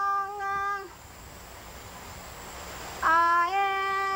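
A high voice singing long, steady held notes: one note ends just under a second in, then after a pause with only hiss another note begins about three seconds in and steps up a little in pitch.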